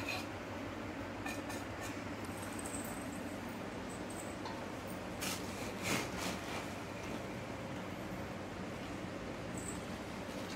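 Steady low background hum, with a few soft rustles and clicks about five to six seconds in from a hand scooping puffed rice out of a plastic-lined sack.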